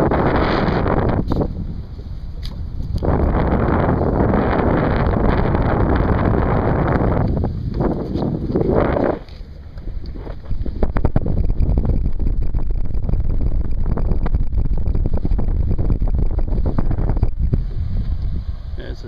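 Wind buffeting the microphone in heavy gusts through the first nine seconds or so, then settling to a lower, steady rumble.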